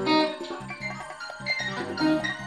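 Acoustic guitar being picked: a loud chord at the start, then a slow line of single ringing notes.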